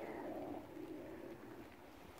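A rooster giving a low, soft call that fades away after about a second.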